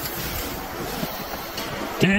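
Wind rushing over the microphone: a steady noise without any pitch, with a small click about a second in.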